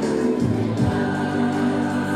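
A choir of voices singing a song with long held notes, the music for a Tongan group dance.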